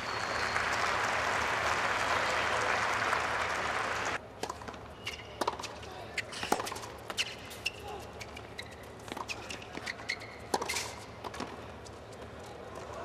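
Crowd applauding, cut off abruptly about four seconds in. Then tennis play: sharp, irregular knocks of racket strikes and ball bounces, with a few short high squeaks.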